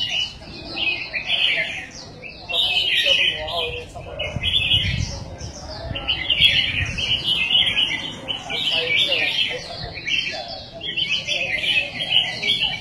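Caged red-whiskered bulbuls singing: bright, quick warbled phrases that recur every second or two throughout.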